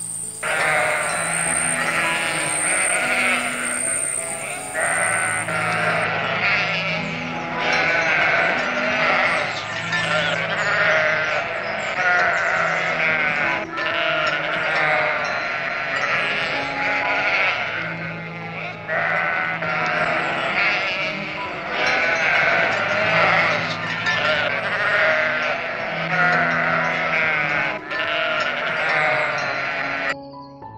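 A flock of sheep bleating continuously, many voices overlapping, over calm background music with slow low notes.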